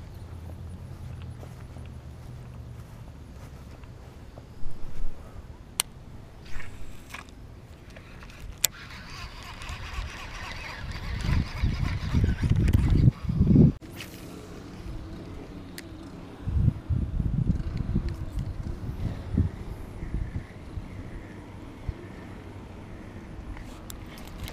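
Wind rumbling on an action-camera microphone, with handling noise and a few sharp clicks as a baitcasting rod and reel is worked. Stronger gusts or handling thumps come about halfway through and again later.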